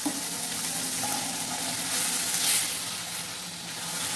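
Diced onion, bell pepper and tomato sizzling in olive oil in a stainless steel frying pan as they are stirred with a spatula; a steady hiss that swells briefly a little past halfway.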